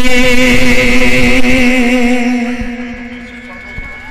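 A man singing a naat into a microphone over a PA, holding one long wavering note that fades away in the last second or so.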